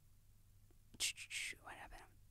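A woman's breath and soft mouth sounds close to a microphone: quiet for about a second, then a few short, breathy, whispery noises, like a quick intake of breath, during a pause in her speech.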